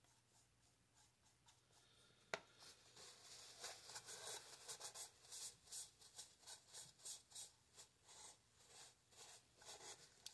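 Paper towel rubbing over freshly painted wood, wiping off a watered-down brown paint wash in quick repeated strokes, about two a second. A single light tap comes a couple of seconds before the wiping starts.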